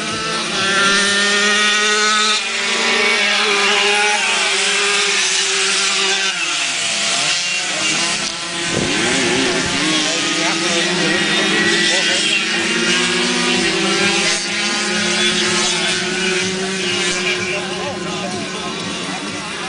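Several grass-track racing motorcycles running a race, their engines revving and rising and falling in pitch as the riders accelerate and pass, with one engine dropping sharply in pitch about seven seconds in.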